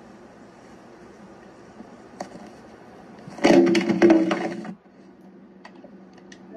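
A single sharp click a little after two seconds, then a loud burst of cracking, crunching noise lasting about a second, over a faint low background.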